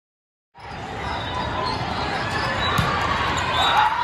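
Indoor volleyball game sounds in a large hall: players and spectators calling out and talking, with the thump of balls being hit and bouncing. The sound starts suddenly about half a second in, after silence.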